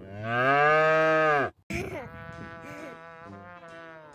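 A cow's moo: one long, loud call that drops in pitch at its end and cuts off abruptly about a second and a half in. Music with held notes follows.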